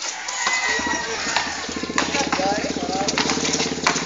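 A small engine idling, a steady low hum that settles into a fast, even putter about a second and a half in, with a few sharp knocks over it.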